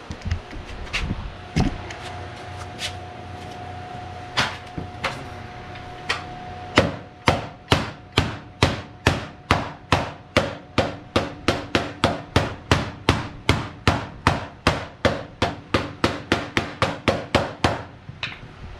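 White rubber mallet striking a panel laid over a grooved plywood board, pounding a bead into it. A few scattered blows at first, then a steady run of strikes at about three a second for the second half.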